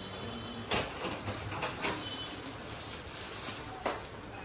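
Plastic wrapping rustling and crinkling as folded cloth is handled, with a few louder crinkles, over a steady background hum.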